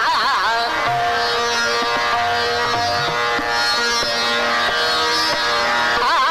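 Indian classical music: a fast-wavering ornamented phrase ends just after the start, giving way to long held notes over a drone, touched with plucked string accents.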